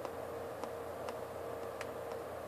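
A low steady hum with a thin steady tone, and a few faint, irregularly spaced ticks.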